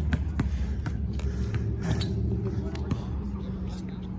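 A basketball bouncing a few times on an outdoor court, heard as scattered short knocks over a steady low rumble.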